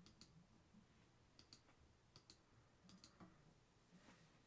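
Near silence: room tone with faint, sharp clicks coming in close pairs, four pairs in all.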